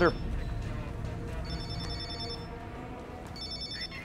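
Mobile phone ringing twice in quick succession, each ring a short burst of rapid, high electronic trilling.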